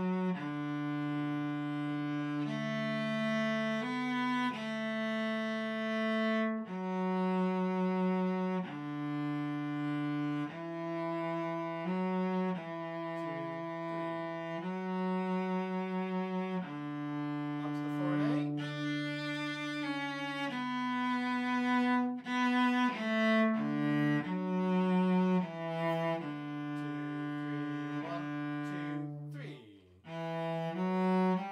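Cello bowed at a slow practice tempo, playing a simple melody in long sustained notes that change about every one to two seconds, with a short break just before the end.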